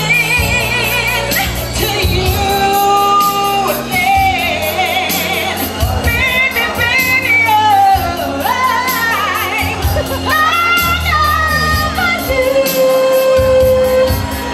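Woman singing R&B live into a handheld microphone over musical accompaniment with a steady bass. Her line slides and wavers through runs with vibrato, and she holds one long note near the end.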